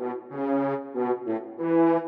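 Sampled French horns from the Miroslav Philharmonik 2 orchestral library's portato horn patch playing a staccato pattern in a major key at a brisk tempo: several short notes one after another, the last held longer near the end.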